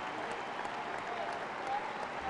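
Steady applause from a crowd in a basketball arena.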